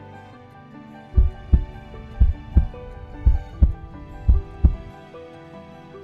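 Heartbeat sound effect: four double lub-dub thumps, about one a second, over soft sustained background music.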